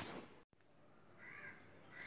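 Near silence, with one faint, short call, of the kind a distant bird makes, about a second and a half in.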